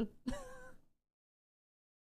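A woman's short, high-pitched laugh, about half a second long, right after the last word of her sentence, followed by silence.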